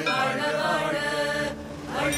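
A film song sung by a group of voices in a chanting style over music, dipping briefly near the end.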